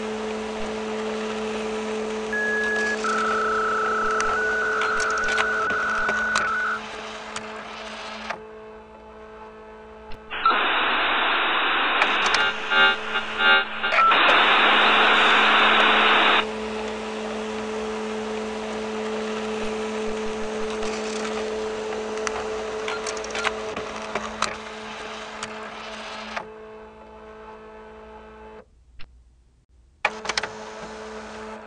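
Retro computer terminal sounds: a steady low electrical hum with a few short beeping tones and scattered clicks, then about six seconds of harsh, phone-line-limited dial-up modem noise as the terminal connects to a host. The hum cuts out briefly near the end.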